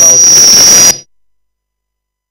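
Loud noise glitch on the presenter's microphone feed: a harsh static-like rush with a steady high whine, which cuts off suddenly about a second in and leaves the sound completely dead.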